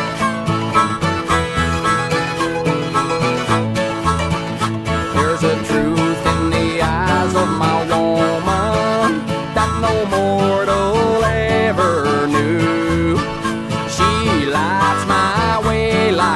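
Instrumental break of a country-rock song: plucked guitar and banjo with a lead line bending in pitch, over a steady bass and beat.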